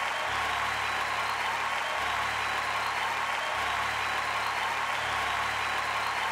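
Steady audience applause, with a low bass note beneath it that shifts about every one and a half seconds.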